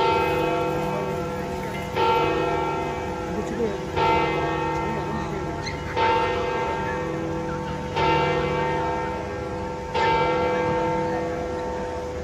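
A large church bell of St. Peter's Basilica tolling six slow strokes, one every two seconds. Each stroke rings on and fades slowly into the next.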